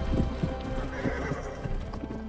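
A horse galloping, its hooves beating fast on the ground, with a whinny about a second in, over music.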